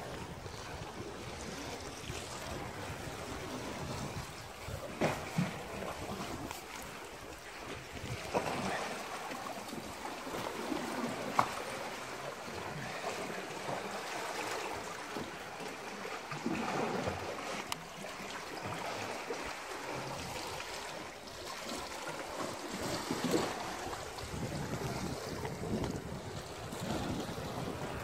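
Steady wash of sea water in a rocky cove, with wind buffeting the microphone and a few brief faint sounds scattered through.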